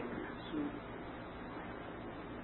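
Steady background hiss of an old, narrow-band sermon recording between phrases, with a faint brief sound about half a second in.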